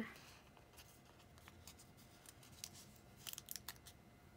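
Faint paper handling: a sheet of paper stickers being handled and a sticker peeled from its backing, with a quick run of small clicks near the end.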